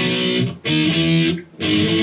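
Electric guitar playing power chords: three strummed chords, each held for about half a second to a second, with brief muted gaps between them. The last chord starts near the end and rings on.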